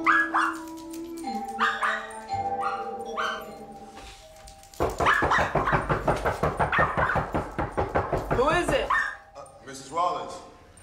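Small dog barking: a few single barks over sustained film-score tones, then a fast unbroken run of yapping from about five seconds in to about nine seconds.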